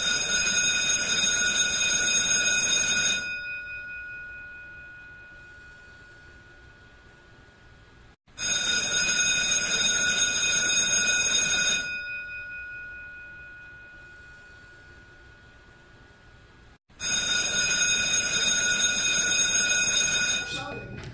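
An electric bell rings three times, each ring about three seconds long with a ringing fade afterwards, about eight and a half seconds apart.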